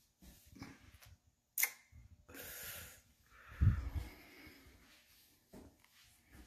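Faint handling noise from a phone recording a video as it is moved about: a sharp click about a second and a half in, a brief hiss, then a low thump near the middle, which is the loudest sound.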